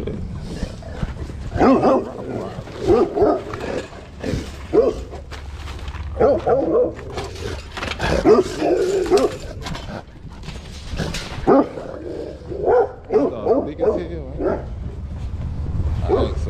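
A black-and-tan Rottweiler-type dog barking repeatedly in short, irregular clusters, with a brief lull around the middle, over a steady low rumble.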